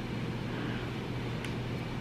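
Steady room background noise with a constant low hum, and one faint click about one and a half seconds in.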